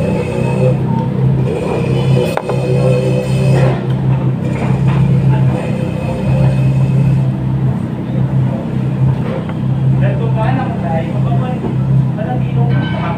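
Eating-place ambience: indistinct chatter from people nearby over a steady low hum, with light clatter of dishes.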